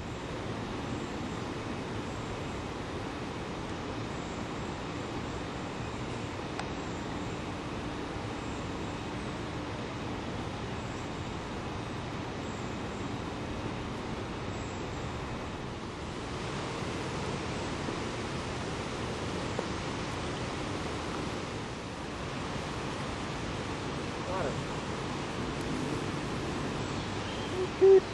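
Steady outdoor background noise: an even rushing hiss with no distinct events, turning slightly brighter about halfway through.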